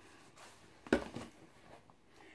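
A cigarette pack being handled: a short, sharp knock about a second in, followed by a couple of lighter ticks and faint rustling.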